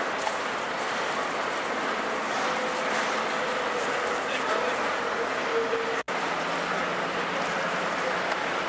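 Steady din of a covered station platform beside a standing Metra commuter train, with footsteps of people walking. The sound cuts out for an instant about six seconds in.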